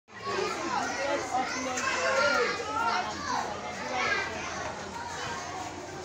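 A crowd of children's voices talking and calling over one another, a continuous babble of kids' chatter.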